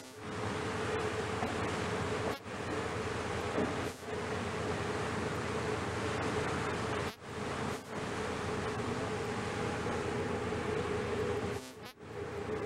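Rigid-hull inflatable boat's engine running alongside a ship, a steady buzzing drone over rushing water. The sound breaks off for a moment several times.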